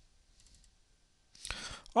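Faint computer mouse clicks, then a short intake of breath near the end.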